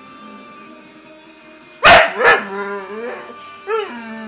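English Bull Terrier barking twice in quick succession about two seconds in, the second bark trailing into a wavering, drawn-out 'talking' whine, then one short yip near the end. Music plays steadily underneath.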